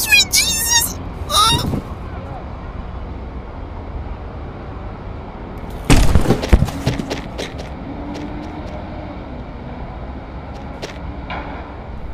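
Brief high-pitched voice sounds at the start, then a steady low background rumble. About six seconds in comes a sudden loud bang with a short clatter after it.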